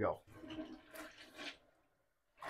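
Toilet flushing, heard faintly as water rushing in the bowl; the sound drops out completely about one and a half seconds in.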